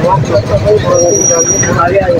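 Men's voices talking over the steady noise of a busy street market with traffic. A thin, high steady tone sounds briefly about a second in.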